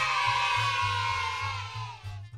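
A crowd cheering, many voices together that die away near the end, over background music with a steady low pulse.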